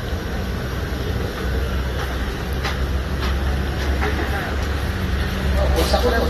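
Steady low outdoor rumble with scattered background voices of people nearby.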